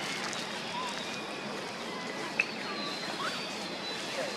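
Outdoor ambience: a steady hiss with a few short, faint squeaky chirps and one sharp click about two and a half seconds in.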